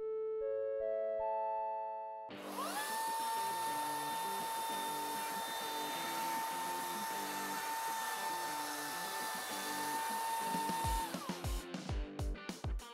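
A short rising jingle of stepped notes, then a Milwaukee M18 FUEL cordless electric chainsaw spins up and runs with a steady high whine for about eight seconds. Near the end it winds down within a moment of the trigger being released, the quick electric stop of the saw.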